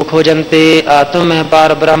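A man reciting Gurbani (Sikh scripture) in a fast, even chant, each syllable held on a level note.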